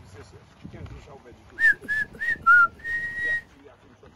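A person whistling a short tune: four quick notes, the last dipping lower, then one longer held note.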